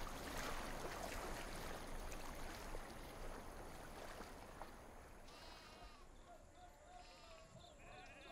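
Faint sheep bleating, several wavering bleats starting about five seconds in, over a soft noisy ambience that fades during the first few seconds.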